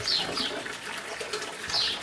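A small bird chirping twice in short, high, falling notes, over a soft rustle of dry leaves being stripped from a bonsai by hand.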